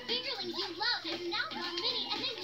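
High-pitched squealing, chattering voices with no words, from a toy commercial playing through a TV speaker, with a little music beneath.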